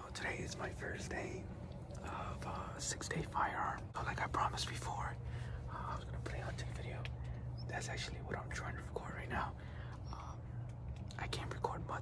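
A man whispering close to the microphone, in short runs of hushed speech.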